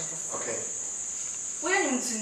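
A steady, unbroken high-pitched hiss runs underneath throughout. A person's voice starts a word near the end.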